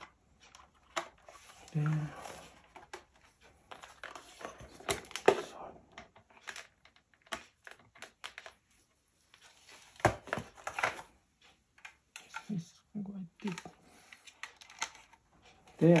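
Irregular clicks, taps and rustles of hands handling guitar effects pedals and plugging in power cables.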